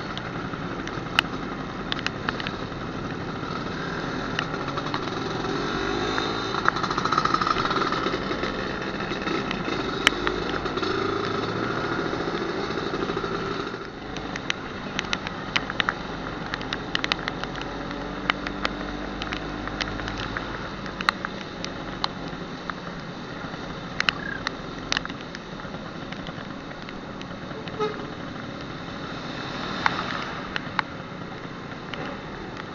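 Vintage two-stroke scooter engine running under way on a wet road, with wind and road noise. It grows louder from about six seconds in and drops back at about fourteen seconds. Scattered sharp clicks of raindrops hitting the camera.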